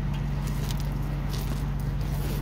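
Footsteps on loose gravel, a few faint crunches, over a steady low hum.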